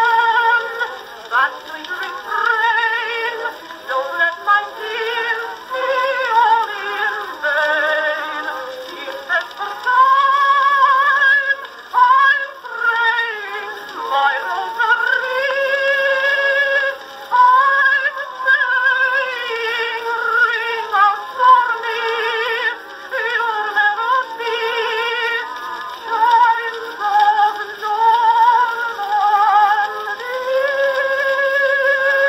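Edison Blue Amberol cylinder played on an Edison Amberola DX phonograph: a 1918 acoustic recording of a woman singing with accompaniment, thin and horn-reproduced with no bass.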